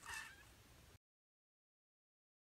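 A short, faint, high-pitched call lasting about half a second. The audio then cuts off to total silence about a second in.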